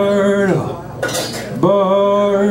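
A man's voice singing two long held notes without accompaniment, with a short sharp hiss between them.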